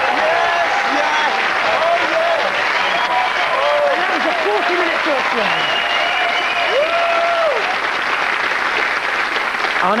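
Studio audience applauding and cheering, a steady wash of clapping with voices calling out over it. It marks the end of a quiz round.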